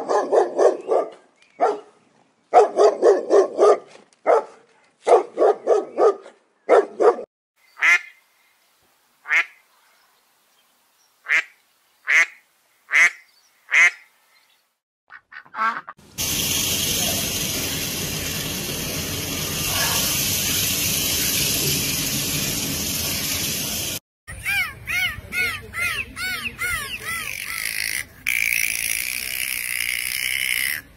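A run of different animal calls: first a series of short, nasal, pitched calls, then thin high chirps. After that comes a steady stretch of noise, then rapid rising-and-falling whistles near the end.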